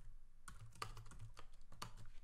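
Typing on a computer keyboard: a run of separate keystroke clicks at uneven spacing, a few a second.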